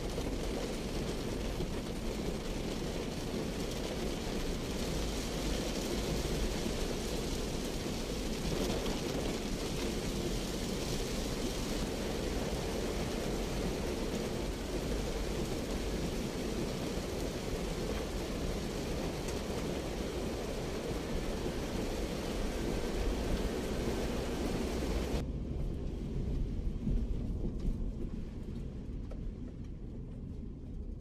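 Heavy rain drumming on the roof and windshield of a Daihatsu Terios, heard from inside the cabin over the low rumble of the moving car. About 25 seconds in, the rain noise drops away abruptly, leaving mostly the low car rumble.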